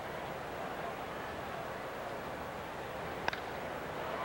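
Low, steady stadium crowd noise under a TV broadcast, broken about three seconds in by a single sharp crack of a wooden bat hitting a baseball.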